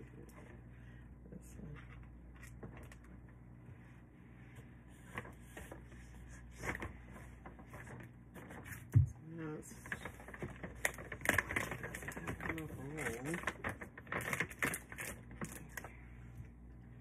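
Clicks, taps and rustles of bottles, a plush toy and tape being handled and set into a cardboard gift box, with a single loud low thump about nine seconds in.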